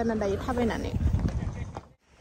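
A person speaks briefly at the start, then footsteps on a gravel dirt track come through with wind rumbling on the microphone. The sound fades out near the end.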